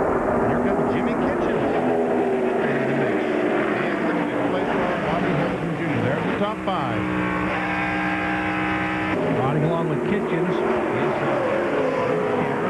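ARCA stock-car V8 engines racing at speed, several overlapping, their pitches rising and falling as the cars run past. From about six and a half to nine seconds in, one engine holds a steady pitch.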